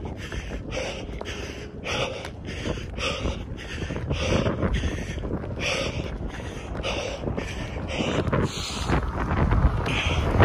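A runner breathing hard through the mouth in a steady rhythm, about two breaths a second, while running uphill. Wind rumbles on the microphone underneath.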